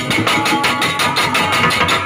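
Loud, lively tanji band music for kuda renggong, a fast, steady drum beat under a sustained melody line.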